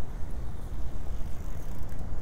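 Outdoor city ambience: a steady low rumble of distant road traffic.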